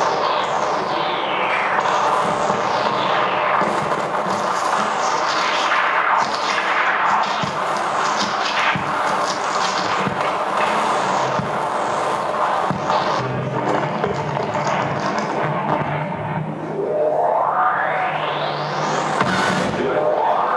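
Live experimental noise played on an amplified wooden box fitted with upright metal rods: a dense, scraping texture with many falling pitch sweeps over a steady low drone. A long rising sweep climbs through the last few seconds.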